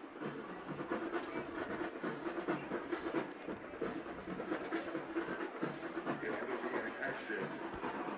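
Stadium crowd noise at a college football game between plays: a steady din of many voices with scattered sharper sounds mixed in.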